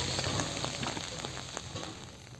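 Rain falling, a patter of many small drops that grows quieter towards the end.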